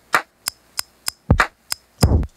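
Hip-hop drum pattern played back from a Teenage Engineering OP-1, with no other instruments: a deep kick about a second and a half in and again at the end, and lighter, crisp snare and hi-hat hits between the kicks.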